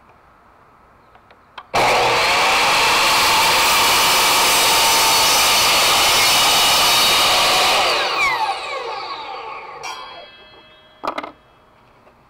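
Craftsman Laser Trac miter saw starting abruptly about two seconds in and running loud and steady for about six seconds while its blade is brought down through a painted wooden board. It is then switched off and spins down in a falling whine. A click and a short clatter of knocks follow near the end.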